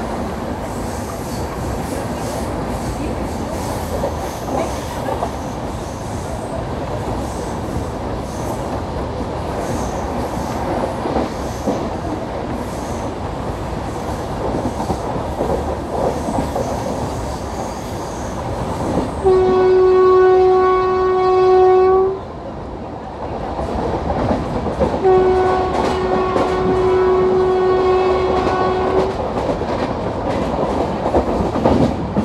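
LHB coaches of an express train running at speed, with wheel clicks over the rail joints. About 19 seconds in, the WAP4 electric locomotive's horn sounds one steady blast of about three seconds, then a second blast of about four seconds a few seconds later.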